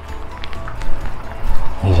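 Wind rumbling on the microphone, with faint ticks of footsteps on wet paving stones.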